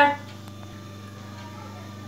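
The last of a woman's spoken word, then a pause filled only by a steady low hum.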